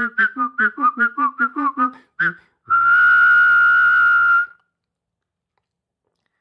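A trombone piece performed by mouth. It opens with a quick run of short, separate vocal notes, then moves to one long, steady whistled note held for nearly two seconds.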